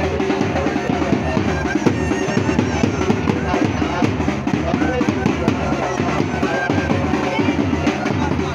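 A pipe band playing bagpipes over loud, fast, dense drumming.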